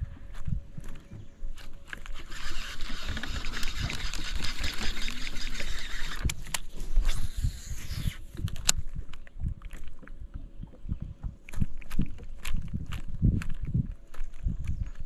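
Baitcasting reel being cranked to retrieve line: a fine, fast whirring begins about two seconds in and runs for about five and a half seconds, then stops, followed by a sharp click. Low bumps sound throughout.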